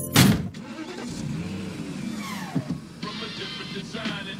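A single hard hit lands sharply just after the start, the loudest sound here, followed by film-score music.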